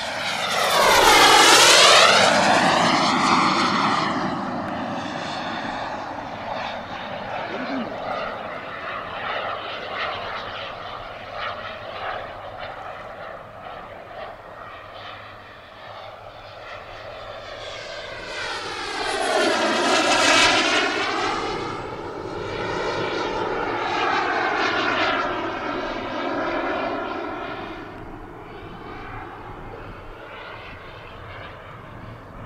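Turbine engine of a large RC scale Mirage 2000C model jet flying past twice. Each pass swells and sweeps in tone; the first, a second or two in, is the loudest, and the second comes around twenty seconds in. Between the passes the jet runs on as a steady, more distant sound.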